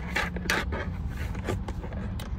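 Tarot cards being handled, two brief rustles or slaps in the first second, over a steady low hum.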